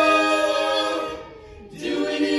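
Mixed male and female a cappella group singing through microphones, holding a sustained chord that dies away about a second in; after a brief pause the voices come back in near the end.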